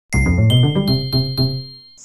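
Short bell-like chime jingle: a quick run of about five notes topped by bright ringing dings, fading out near the end.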